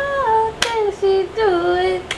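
A woman singing unaccompanied in two drawn-out phrases, holding notes that slide down in pitch. There is one sharp click about a third of the way in.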